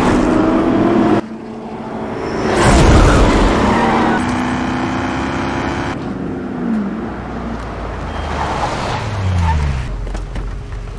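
Film soundtrack of a Ford GT40 race car: its engine drones, rushes past loudest about three seconds in, then falls in pitch as it slows, twice more before the end.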